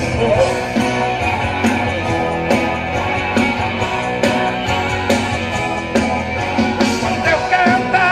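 Live sertanejo band playing an instrumental passage: electric guitars, bass and keyboards over a drum beat with a hit about once a second.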